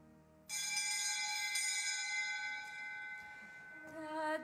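A single bright bell stroke about half a second in, ringing and slowly fading for about three seconds.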